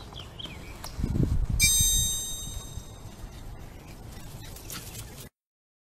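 Outdoor ambience with faint bird chirps. About a second in, a loud low rumble lasts about a second, and a brief high-pitched tone comes partway through it. The sound cuts off suddenly shortly before the end.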